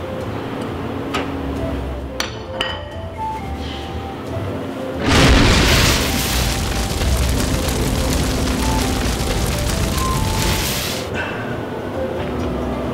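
Fire-blast sound effect: a sudden loud rush of flame starting about five seconds in, running steadily for about six seconds and then stopping, over background music.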